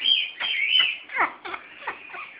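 African grey parrot whistling and chirping: a run of high whistled notes, with two sharply falling whistles a little over a second in and near the end.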